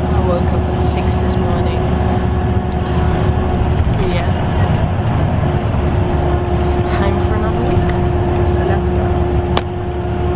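Inside a moving bus: a loud, steady low rumble of engine and road with a steady droning hum that drops out briefly midway and returns.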